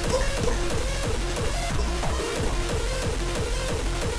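Hard dance track playing: a steady beat of distorted kick drums under a repeating synth figure.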